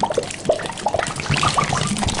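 Wet squelching of soft ice cream with chocolate sauce being stirred in a bowl: a quick, irregular run of short squishes.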